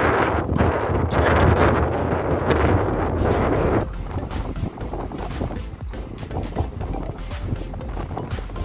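Wind buffeting the microphone over the wash of sea surf on a rocky shore, a dense rushing noise with a low rumble. About four seconds in it cuts off abruptly to a much quieter background.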